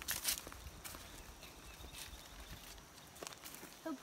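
Faint footsteps on dry leaf litter, with a few sharper crackles in the first half-second.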